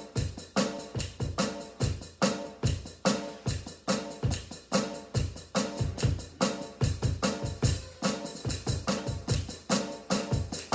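Electronic drum kit played in a steady rock groove at about 144 beats per minute, kick and pad hits repeating evenly without a break.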